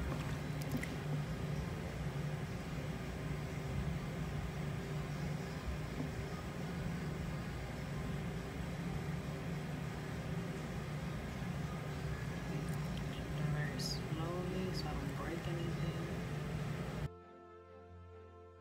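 Faint sloshing and handling noises from hands working softened wax candles in a tub of water, over a steady low hum. The hum cuts off suddenly about a second before the end, and soft background music takes over.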